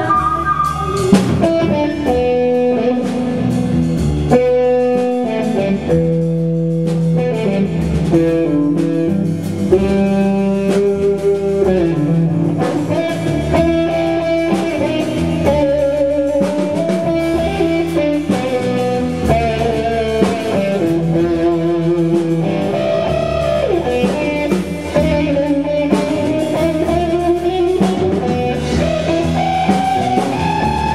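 A live jazz-rock band playing: electric guitar, bass guitar and drum kit, with a wavering melody line over them.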